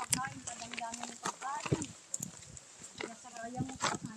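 Faint, indistinct voices and scattered footsteps on a dirt path, with short calls that may come from animals.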